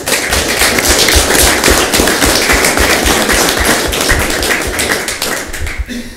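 A roomful of people applauding; the clapping starts sharply and dies away near the end.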